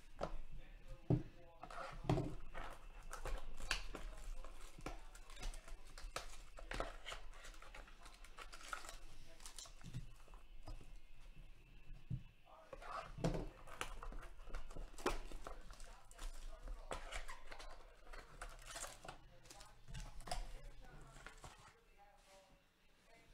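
Cardboard trading-card mini-boxes being shuffled and handled on a table: irregular knocks, scrapes and rustles throughout.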